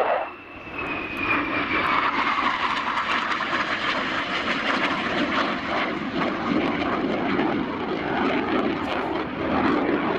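McDonnell Douglas F/A-18 Hornet's twin jet engines at high power on a display pass. A high whine falls in pitch over the first couple of seconds, then gives way to a loud, steady jet noise with a crackle as the fighter flies away.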